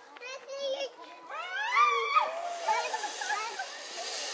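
A high voice cries out, rising in pitch, as the rider sets off. From about two seconds in, a steady hiss follows: the zip-line trolley running along its steel cable.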